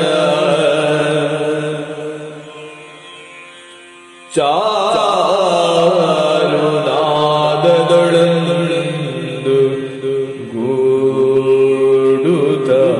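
Male voice singing a devotional line in Yakshagana bhagavathike style over a steady drone. The sung phrase dies away about two seconds in, and a new line comes in suddenly a little after four seconds.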